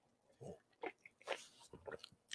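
A man drinking from a paper cup: about four short, faint gulping and swallowing sounds, roughly half a second apart.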